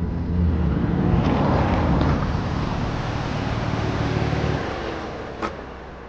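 A car driving past, its engine and tyre noise coming in suddenly, strongest in the first two seconds, then fading away over the next few.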